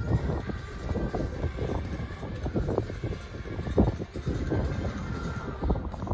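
A horse's hooves striking the sand arena footing at a canter, a run of dull thuds over a steady low rumble.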